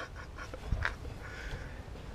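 Faint knock and click about three quarters of a second in, over low background noise: someone climbing down the steel ladder of a concrete bunker shaft.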